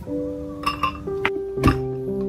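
Background music with sustained melodic notes, over several sharp clinks of a glass blender jar being handled and filled; the loudest knock comes about one and a half seconds in.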